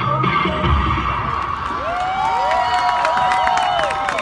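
Performance music ending about a second and a half in, followed by a crowd cheering with long, drawn-out whoops.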